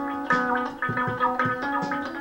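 Electric guitar played solo, picking a run of single notes at about four or five notes a second.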